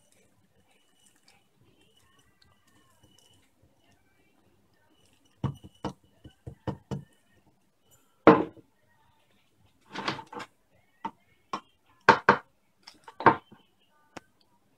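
Handling noise: quiet at first, then about a dozen irregular knocks and clicks in the second half, the loudest a dull knock near the middle and a cluster near the end.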